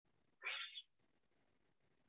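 A single brief high-pitched call about half a second in, rising in pitch, against near silence.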